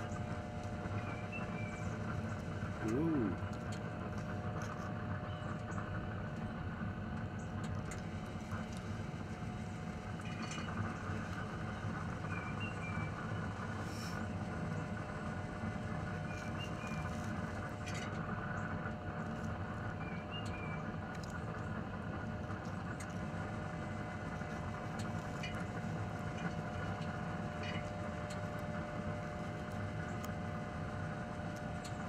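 A steady mechanical hum with a couple of steady droning tones, with a few faint high chirps several seconds apart.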